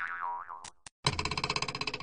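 Cartoon 'boing' sound effect with a wobbling, springy pitch, followed by two short clicks. Then, about a second in, a rapid pulsing, rattling sound effect of about a dozen pulses a second.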